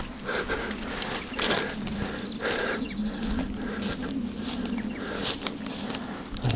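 Rustling and crackling of dense dry scrub and bracken being pushed through on foot, with irregular snaps and clicks of twigs and handling noise from the moving camera.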